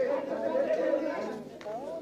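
Speech only: quiet chatter of several people talking over one another in a room, with no one voice standing out.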